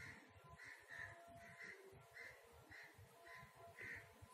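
Near silence with faint, distant bird calls: short calls repeating about twice a second.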